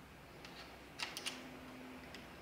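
A few faint, quick metal clicks about a second in, from a 5 mm Allen key being fitted to and turning the clamp bolt of a bicycle's V-brake lever to loosen it.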